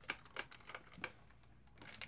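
Faint, irregular clicks and taps of a Nerf Elite Disruptor toy blaster being handled.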